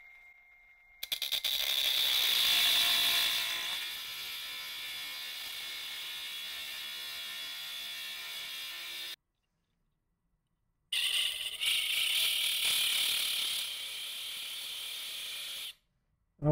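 Ridgid 18V subcompact brushless cut-off saw cutting through a metal angle guide: a high motor whine that comes in about a second in and is loudest over the next couple of seconds, then runs steadier and quieter. The sound drops out completely for about two seconds past the middle, then returns loud and settles again before stopping just before the end.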